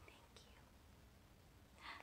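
Near silence: faint room tone with a steady low hum, and a soft breathy whisper near the end.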